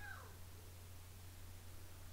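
A cat meows once, faint and brief, falling in pitch, at the very start. A steady low hum runs underneath.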